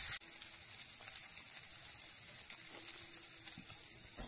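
Faint sizzling of mashed flat beans frying in oil in a pan, with light scattered crackles.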